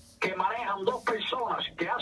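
Speech: a person talking, after a brief pause at the start.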